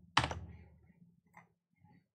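Computer keyboard keystrokes: one sharp, loud key strike about a quarter-second in, then two light clicks later on.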